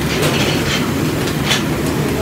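Commercial kitchen noise: a steady heavy rumble from the gas range and its burners, with oil bubbling in a deep fryer and the griddle sizzling. A few short sharp clinks or hisses come about a quarter second in and at about a second and a half.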